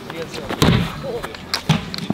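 A large inflatable exercise ball kicked hard with a foot: a sharp, dull-bodied thud about half a second in, followed by a few shorter knocks about a second later.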